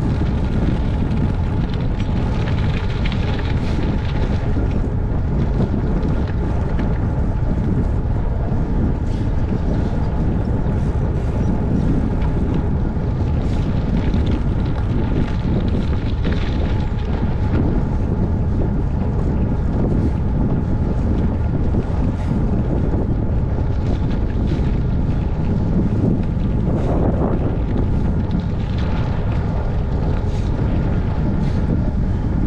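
Wind buffeting the microphone of a camera on a moving bicycle: a steady rush, with the rolling noise of the bike's tyres underneath.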